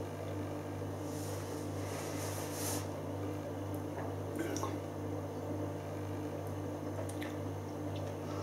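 Quiet sipping and swallowing of beer from a glass, with faint mouth sounds while tasting, over a steady low hum. There is a soft rush of sound from about one to three seconds in, and a couple of small ticks later.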